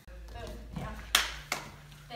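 Two sharp slaps about a third of a second apart, the first the louder, over faint talk in the background.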